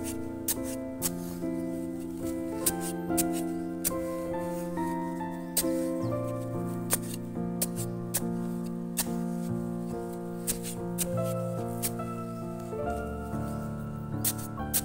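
Background music of held notes that change in steps every second or so, with sharp clicks sounding irregularly over it.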